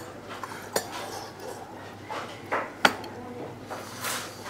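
Metal spoon clinking against a bowl during eating: three sharp clinks, one under a second in and two close together past the halfway point.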